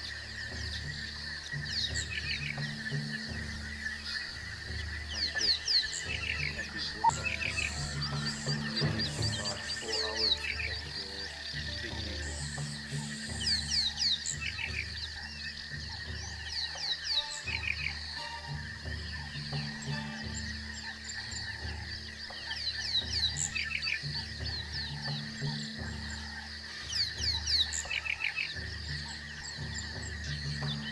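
Layered background nature ambience: clusters of quick, high, falling chirps and low croaking calls over a steady high drone, with music underneath, continuing unchanged across the picture cuts.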